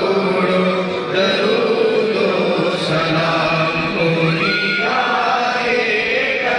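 A crowd of men's voices chanting together in a continuous devotional recitation, many voices overlapping at a steady, loud level.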